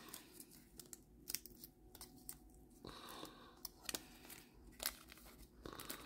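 Faint crinkling and tearing of a baseball sticker pack's paper wrapper as fingers pick and peel it open, in scattered small crackles with a few sharper ticks.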